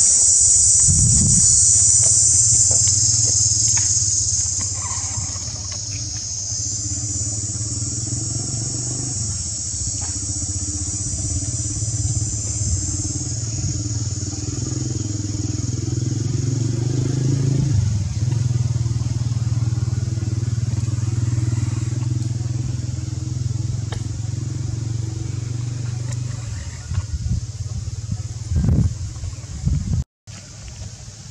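A high-pitched insect chorus fades away about halfway through, over the steady low hum of an idling engine. The hum stops a few seconds before the end, and a few knocks follow.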